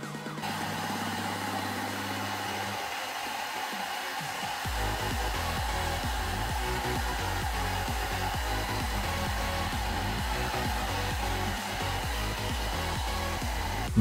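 Small handheld hair dryer blowing steadily, starting about half a second in, heating a hot-glue model foot so the glue softens and melts.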